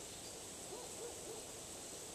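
A bird giving a quick run of about five short hooting notes about a second in, over a steady hiss.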